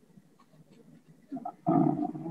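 Near silence for over a second, then a man's hesitant, drawn-out spoken "uh" near the end.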